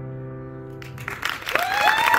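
The last sustained chord of piano and acoustic guitar dies away, then audience applause breaks out about a second in, with cheering voices joining shortly after.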